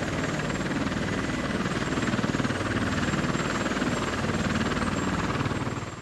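Helicopter rotor running steadily with a fast, even chop, fading out near the end.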